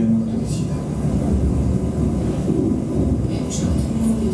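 Film soundtrack played over speakers in a room: a steady low rumble with brief snatches of voice.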